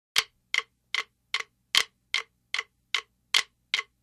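A steady run of sharp, unpitched clicks or claps, about two and a half a second, with every fourth one louder.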